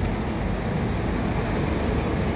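A bus pulling in close alongside, with a steady low rumble and road noise.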